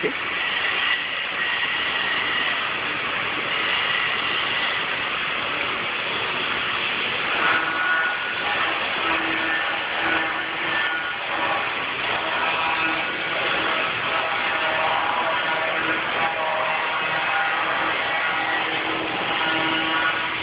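Granite-cutting shop machinery running steadily, a loud even mechanical noise with faint whining tones and a low hum that comes and goes from about seven seconds in. A person coughs right at the start.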